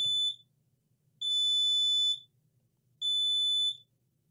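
Short-circuit tester's continuity beeper sounding a steady high beep three times: a brief one at the start, a longer one of about a second, and another near the end, as the probes rest on the power rail and ground. The beep signals a short between them.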